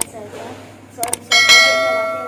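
Subscribe-button overlay sound effect: sharp mouse clicks, a pair of them about a second in, then a bell chime that rings on and slowly fades.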